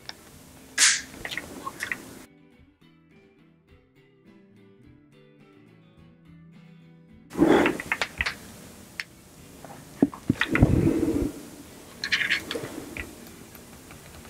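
Hands prying a firmly stuck electronic speed controller out of an RC car chassis: irregular clicks, knocks and scraping of plastic and wires, with a louder handling noise lasting under a second about ten seconds in. About two seconds in the handling breaks off for some five seconds of music.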